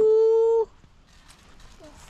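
A person's drawn-out "oh!" of alarm, rising and then held on one high pitch, cutting off suddenly just over half a second in; a child has just about fallen off a trampoline. After that only faint outdoor background remains.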